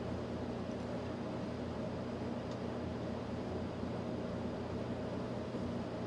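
Steady low hum of room background noise, with one faint tick about two and a half seconds in.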